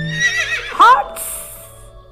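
A horse whinnying once: a quavering high call that drops steeply in pitch near its end, followed by a short breathy hiss.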